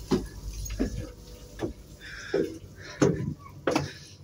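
Footsteps climbing a ship's deck stairway, a knock about every 0.7 s.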